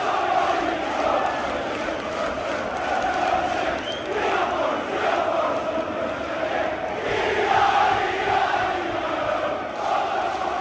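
Large football crowd chanting and singing in unison, a continuous mass of voices with no break.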